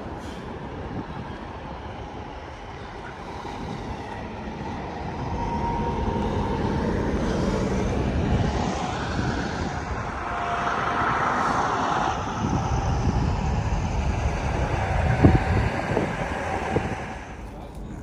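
Semi-truck diesel engines running in the lot, a steady low rumble that grows louder about five seconds in.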